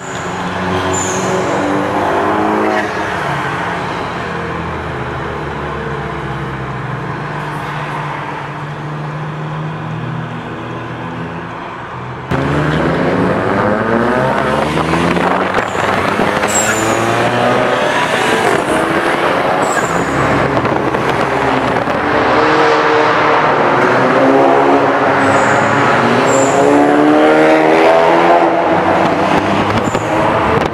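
Car engines revving and accelerating through the gears, pitch climbing and dropping again several times over steady road noise. The sound gets suddenly louder about twelve seconds in.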